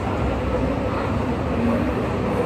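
Steady rushing background noise with no clear source, continuing unchanged from the surrounding talk, and a faint brief murmur near the end.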